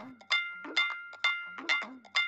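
A bell-like sound-effect or music cue: bright metallic notes struck about twice a second, each ringing briefly with a clear tone.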